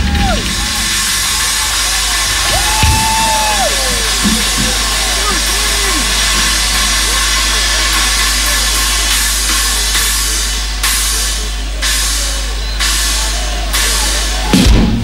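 Live rock concert between songs: a stadium crowd cheering loudly and steadily over a low amplifier hum, with a few held notes that slide down in pitch in the first few seconds and scattered drum hits near the end.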